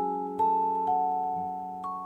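Background music: a gentle melody of struck, ringing notes, each fading before the next, about two notes a second.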